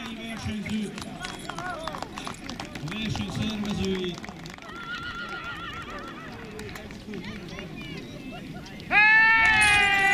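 Handlers shouting short commands at a pair of draft horses hauling a log, with scattered clatter from the team. Near the end comes a loud, drawn-out call.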